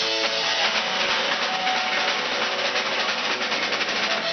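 Live rock band playing loudly: electric guitar over a drum kit, with the steady fast beat continuing throughout.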